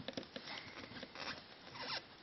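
Faint scratchy rasping with small irregular clicks as the chuck of a corded electric drill is turned by hand to fit a drill bit; the drill's motor is not running.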